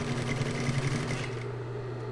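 Industrial sewing machine stitching through four layers of felt, the stitching stopping about a second in while the motor keeps humming.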